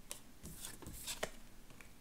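A few light clicks and taps of tarot cards being handled and set down on a table.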